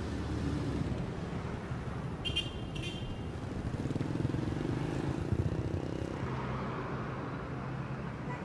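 A small Kia hatchback's engine running at low speed as the car drives up and pulls to a stop, with two short high chirps a little over two seconds in.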